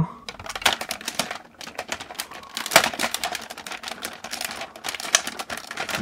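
Hard plastic parts of a Jet Garuda transforming robot toy clicking and clattering as they are handled and fitted together, in quick irregular clicks with a couple of sharper knocks.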